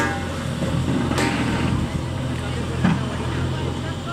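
Heavy construction machinery engine running steadily with a low hum, with two sharp knocks, one about a second in and one near three seconds.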